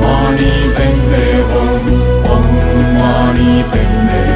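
Buddhist mantra music: a melodic chanted mantra over a sustained low accompaniment, the notes changing about once a second.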